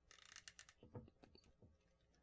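Faint, scattered clicks as a NECA Shin Godzilla action figure's torso ball joint is worked back and forth by hand.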